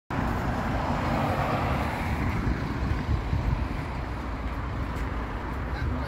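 Road traffic noise from passing cars, louder in the first two seconds or so, over a constant unsteady low rumble.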